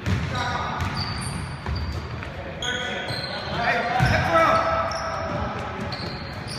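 Basketball game sounds in a large gym: the ball bouncing on the hardwood floor, sneakers squeaking in short high chirps, and players' voices calling out, with the echo of a big hall.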